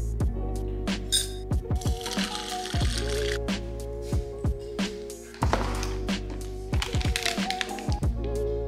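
Background music with a steady beat, deep drum hits and held chords.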